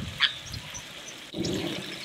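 An animal calls in a quick series of short, high pulses, about four a second, which stop just after the start. From about halfway in, a low rushing noise follows.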